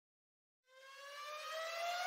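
A single synthesized rising tone, an intro riser effect, fading in about two-thirds of a second in and sliding slowly up in pitch as it grows louder.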